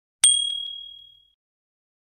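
A single bright notification-bell ding sound effect, the chime that marks clicking the subscribe bell to turn on notifications. It strikes about a quarter second in and rings out, fading away over about a second.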